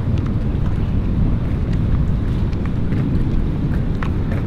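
Wind buffeting the camera microphone: a steady low rumble, with a few faint ticks.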